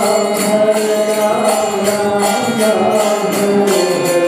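Kirtan: a man's voice chanting a devotional mantra over the sustained chords of a harmonium, with small hand cymbals striking in a steady rhythm.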